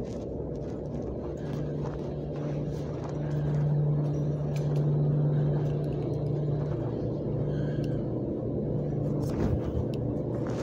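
Steady low hum and rumble of running commercial stack dryers tumbling loads, growing louder a couple of seconds in. A few light knocks come near the end.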